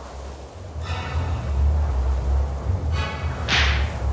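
Dark horror film score: a heavy low rumbling drone with two short swelling pitched stabs. A sharp whoosh sound effect comes about three and a half seconds in.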